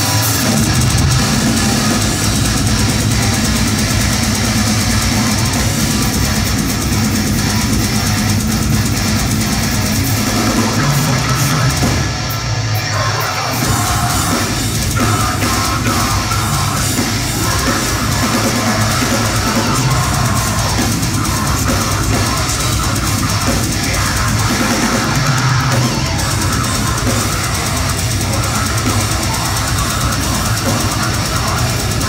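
Deathcore band playing a song live at full volume: heavily distorted guitars, bass and a pounding drum kit, with harsh vocals over them. The music thins briefly about twelve seconds in.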